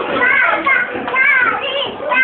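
Young children's high-pitched voices, chattering and calling out over each other while they play.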